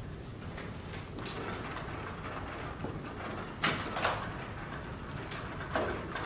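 Steady room hiss, then a few short scratching strokes of a marker on a whiteboard starting a little past halfway, two of them sharper than the rest.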